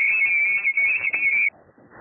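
Shortwave SSB receiver audio on the 20 m band: static and faint overlapping contest voices, with a bright, high warbling tone along the top edge of the passband. About one and a half seconds in, the audio cuts off suddenly to a low hiss as the receive filter is narrowed.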